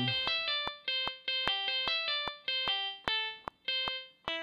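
Guitar arpeggio played solo: quick single plucked notes cycling G, C and E with a passing D, outlining a C major chord.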